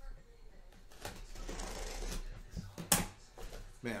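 A blade slicing through the packing tape along the top seam of a cardboard case, a rasping scrape for about a second and a half, followed by one sharp click about three seconds in.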